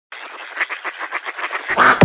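Intro of a bass house track: a rapid, even run of quack-like sounds, about eight a second, growing steadily louder, then a short swell in the last moments before the beat drops.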